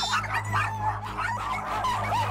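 Several dogs barking and yelping together, their calls overlapping, set off by a fight among them.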